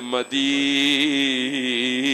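A man's voice chanting in a melodic, drawn-out style: a short phrase, then one long held note with a slight waver.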